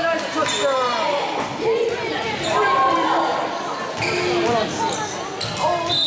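Several people talking at once, echoing in a large gymnasium, with a ball bouncing on the hardwood floor a few times.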